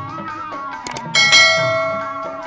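Instrumental music with a mouse-click sound effect just before a second in, followed at once by a bright bell chime that rings and slowly fades: the subscribe-click and notification-bell sound effect of a channel intro.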